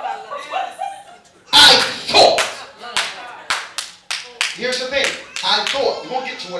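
Voices calling out, loudest about a second and a half in, with a run of sharp, irregular hand claps between about two and a half and five seconds in.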